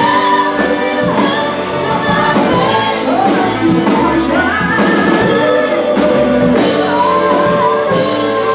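Live band playing a song, several singers carrying the melody over drums and electric guitar.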